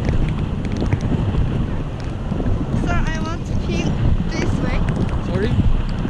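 Airflow of a tandem paraglider in flight buffeting the camera microphone: a steady, dense, low rushing.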